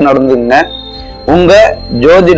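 A man speaking in Tamil in two short phrases over a steady background music bed, with a thin high tone held throughout.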